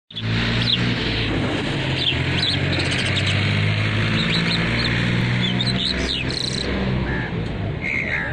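A caged Irani Mashadi jal bird chirping in short, quick notes that slide up and down, over a steady low hum.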